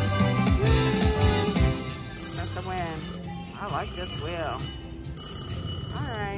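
Slot machine paying out a win: electronic bell ringing in about four bursts over a jingle while the credits count up after three bonus symbols line up.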